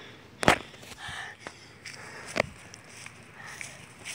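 Sharp knocks and faint rustling from a person walking with a handheld phone: a loud knock about half a second in and a second, quieter one about two seconds later.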